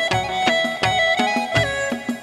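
Live chầu văn ritual music: a đàn nguyệt (moon lute) plays a sliding, ornamented melody over drum beats.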